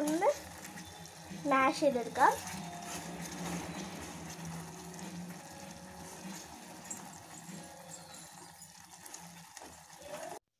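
Sugar syrup bubbling in a steel saucepan, a steady hiss, while a steel ladle stirs it.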